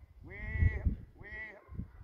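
Sheep bleating: two drawn-out calls in quick succession, the first longer than the second.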